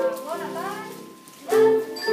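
Children's voices: a short gliding vocal sound in the first second, then about one and a half seconds in, a group of children starts singing together in steady held notes.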